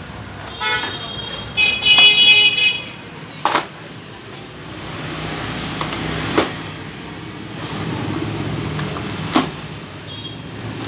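Street traffic with a vehicle horn sounding twice near the start, a short toot and then a longer one. Three sharp plastic knocks follow, a few seconds apart, as plastic stools are stacked.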